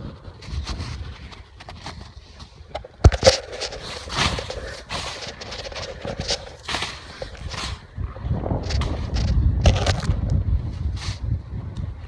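Snow crunching and tent fabric rustling as the tent's outer flap is pulled out from under packed snow, in irregular scrapes, with one sharp knock about three seconds in. Heavier, rougher handling noise in the last few seconds.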